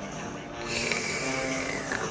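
One noisy slurp of coffee sipped from a mug, lasting a little over a second from about a third of the way in, with a faint whistle in it that sinks slightly in pitch.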